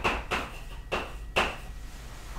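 Chalk on a blackboard: a handful of short, sharp taps and scrapes as an equation is written.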